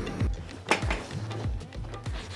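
Background music with a steady beat, and one short knock about two-thirds of a second in.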